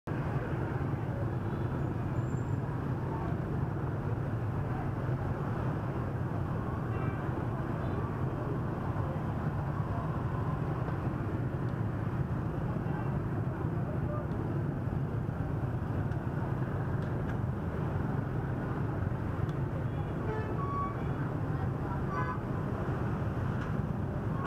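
Dense motorbike traffic: a steady hum of many small engines and tyres, with a few short horn beeps near the end.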